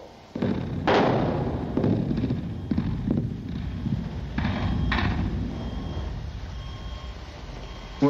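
Mine machinery rumbling heavily, starting suddenly about half a second in, with a series of loud thuds and knocks over the first few seconds.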